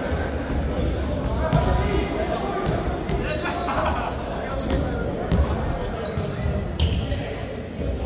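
Volleyballs being hit and bouncing on a hardwood court, several sharp smacks a second or more apart, echoing in a large sports hall over a steady murmur of players' voices. Short high squeaks of sneakers on the wooden floor come in between.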